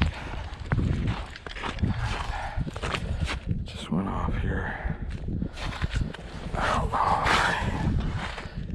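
Footsteps on snow-covered lake ice at a walking pace, with wind buffeting the microphone.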